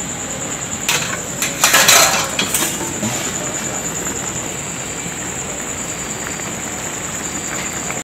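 Metal spatula scraping and clinking against a wok while stirring squid and vegetables in sauce, a short cluster of strokes about one to three seconds in. A steady high-pitched whine runs underneath.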